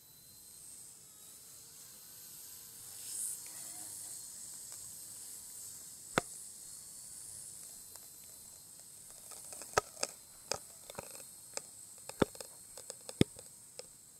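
Distant radio-controlled Bell 206 scale helicopter giving a thin, steady high whine. From about six seconds in, irregular sharp snaps and clicks, more frequent towards the end, as twigs crack underfoot in the undergrowth.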